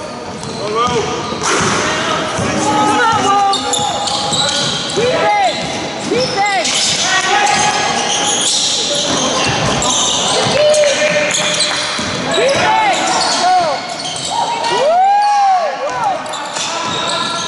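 Basketball game in an echoing sports hall: sneakers squeaking on the wooden court several times, the ball bouncing, and voices calling out.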